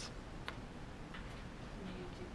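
Quiet room tone with one short, sharp click about half a second in and a faint, distant voice.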